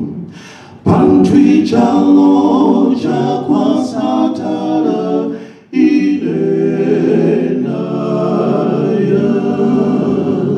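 Male a cappella quartet singing a gospel song in Bemba, four voices in close harmony with no instruments. A new phrase starts about a second in, and the voices break off briefly about halfway through before going on.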